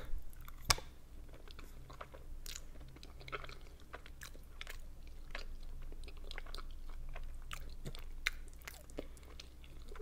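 Close-miked chewing of soft boiled dumplings: wet, irregular mouth clicks and smacks throughout, with one sharp click about a second in.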